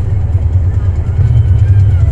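Steady low drone of a truck's engine and tyre noise heard inside the cab while cruising on a paved highway.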